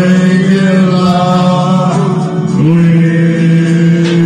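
A man singing karaoke into a microphone, amplified. He holds one long note, then steps up to a second long note about two and a half seconds in.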